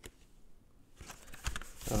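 Cardboard gatefold LP sleeve and its paper insert being handled: soft rustling and light knocks starting about a second in, after a near-quiet moment.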